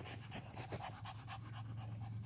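A dog panting rapidly, out of breath after running hard.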